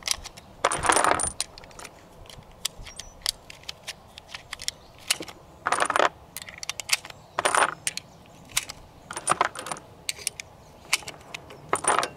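7.62x45 rifle cartridges being pressed one by one into a Vz.52's 10-round box magazine: a run of sharp metallic clicks, with several louder clinking rattles a second or two apart as rounds are handled and seated.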